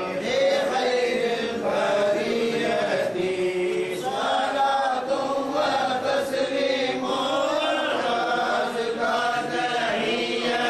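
Men's voices chanting Arabic devotional verse together in a steady, melodic recitation through a microphone.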